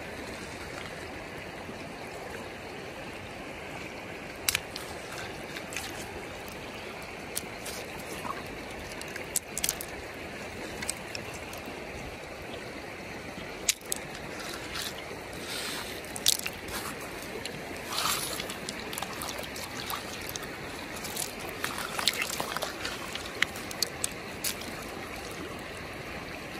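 Shallow river water running steadily over pebbles. Over it come scattered splashes and clicks of stones as a hand digs and scoops sand and gravel from the riverbed, more often in the second half.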